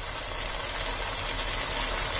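Spice paste of onion and yogurt sizzling steadily in hot oil in a nonstick frying pan, with ground chilli just added. The oil has separated from the paste, the sign that it is well fried.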